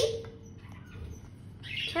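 A green parakeet gives a short, harsh call near the end, after a quiet stretch with a few faint clicks of beaks pecking food from a steel plate.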